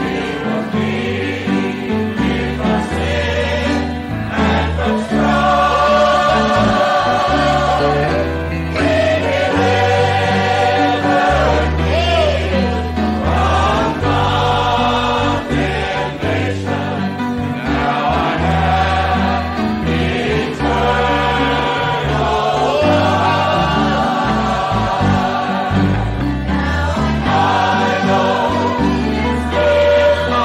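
Many voices singing a gospel hymn together over sustained low accompanying notes that change every couple of seconds, in a live church recording.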